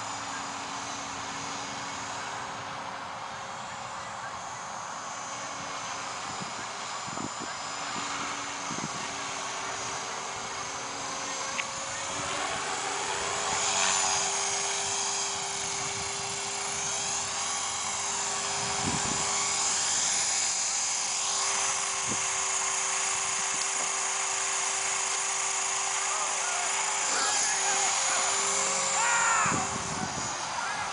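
Align T-Rex 450 electric RC helicopter in flight: the steady whine of its motor and the buzz of its spinning rotor. It grows louder about midway, and the higher whine sweeps up and down in pitch as it manoeuvres.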